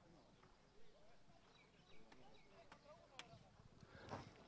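Near silence, with faint distant voices and a few faint hoofbeats of polo ponies on turf.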